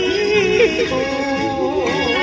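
A woman singing a slow melody into a handheld microphone over a backing track, her held notes wavering with a wide vibrato.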